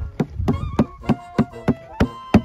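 A hand tapping on the thin, porous basalt roof of a small lava tube, about three knocks a second. The knocks sound hollow because the tube is empty underneath.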